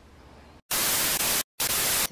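Faint room tone, then about two-thirds of a second in a loud, even burst of static hiss. It drops to dead silence for a moment and comes straight back at the same level.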